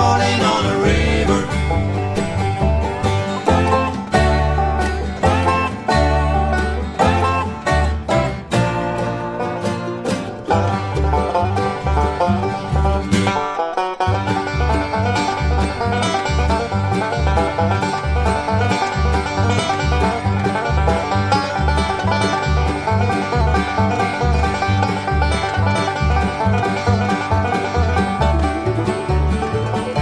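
Bluegrass band playing an instrumental passage, with banjo picking over upright bass and other plucked strings. The bass drops out briefly about fourteen seconds in, then the picking carries on.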